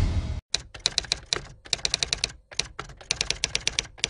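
Typing sound effect: rapid keystroke clicks in short runs with brief pauses, laid over the on-screen caption as it is typed out. It comes after the tail of a low whoosh that dies away in the first half second.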